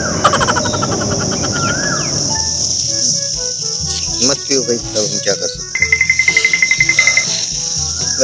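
A steady, high-pitched insect drone, like cicadas or crickets, with light comic background music of short notes and wavering tones over it. A rapid pulsing trill comes in about six seconds in and stops about a second later.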